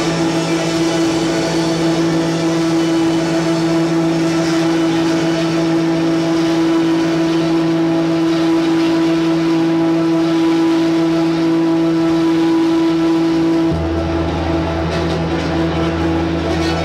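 Live ambient music: a steady drone of held notes stacked on one another, without strumming or singing. Near the end a deep low note comes in and the main middle note drops away.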